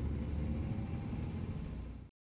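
Steady low rumble of a car in motion, heard from inside the cabin. It cuts off abruptly at the end.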